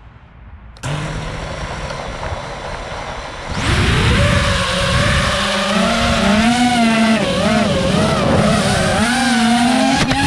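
Drone's electric motors and propellers spinning up: a low idle hum starts about a second in, then jumps to a loud whine at about three and a half seconds. The whine wavers up and down in pitch as the throttle changes.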